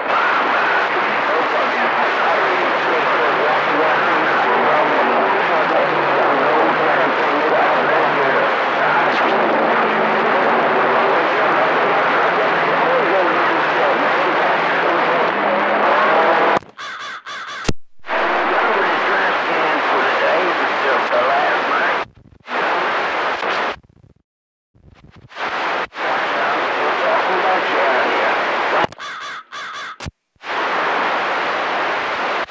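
CB radio receiver on channel 28 picking up skip: constant static with faint, overlapping, unintelligible voices of distant stations piled on top of each other. The receiver audio cuts out abruptly several times in the second half and comes back each time.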